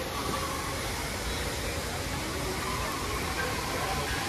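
Steady rushing of falling water, with faint chatter from a crowd of visitors underneath.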